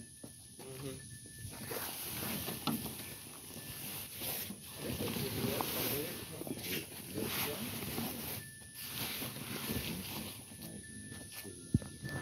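Fabric car cover rustling and scraping as it is pulled and dragged off a car, with a sharp tap near the end.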